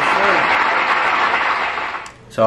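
Audience applauding and cheering in the theatre, heard through the clip's audio, with voices mixed in. It fades near the end.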